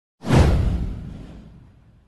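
A whoosh sound effect from an animated intro: it comes in suddenly just after the start, sweeps downward in pitch and fades out over about a second and a half.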